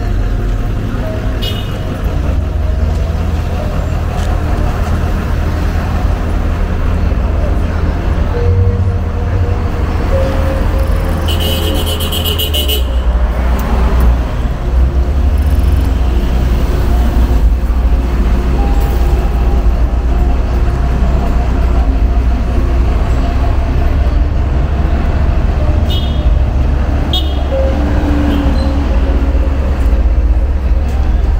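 Town street traffic: cars running and passing over a steady low rumble, with faint voices, and a short high-pitched beep about twelve seconds in.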